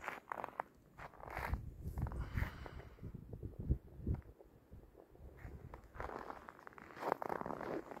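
Footsteps crunching in snow, irregular and fairly faint, mixed with rustling from the phone being handled.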